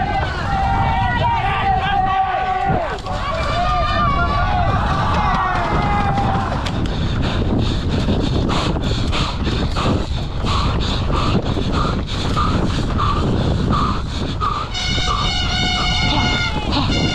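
Mountain bike ripping down a rough dirt trail, heard on a helmet camera: steady wind and trail rumble on the microphone. Spectators shout over it in the first six seconds. Later a short tone repeats about twice a second, and a loud horn blast comes in near the end.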